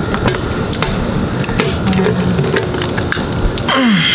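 Knife blade scraping and clicking irregularly against the plastic security cap on a liquor bottle's neck as it is pried at, with a brief rushing noise near the end.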